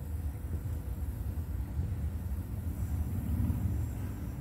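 Steady low rumble inside a parked vehicle's cabin, with no distinct events.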